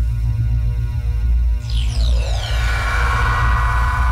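Channel logo intro music: a deep, steady drone under held tones, with a shimmering sweep that falls in pitch about two seconds in.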